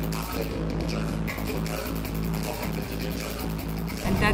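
Live electronic music: a steady deep bass layer under dense, fast, fine clicking textures, continuous and without a break.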